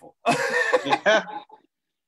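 A person's short, breathy laugh lasting about a second, heard over a video-call connection.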